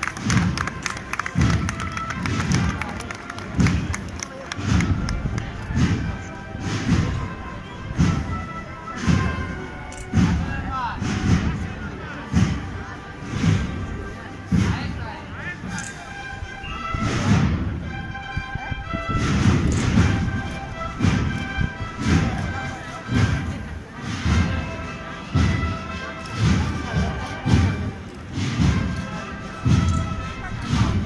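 A procession band playing a slow march, a bass drum beating steadily about once a second under the melody.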